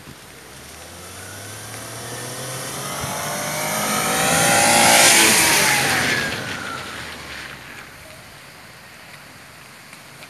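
A car drives past through water on a flooded road: its engine and tyre hiss grow louder to a peak about halfway through, then the engine note drops in pitch and fades as it goes by.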